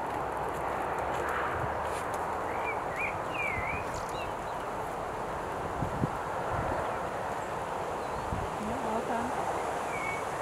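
Wind rushing on the microphone, with the soft hoofbeats of a horse trotting on an arena surface. A few bird chirps come about three seconds in.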